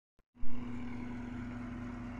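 Tractor engine running at a steady, unchanging pitch, starting about half a second in.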